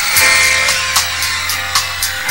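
A live 1960s beat group playing an instrumental passage with electric guitars, drums and keyboard. Sustained chords sit under a cymbal ticking about four times a second.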